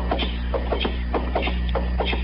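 Footsteps of two men in boots walking at a steady pace, about four or five steps a second, played as a radio sound effect over a steady low hum.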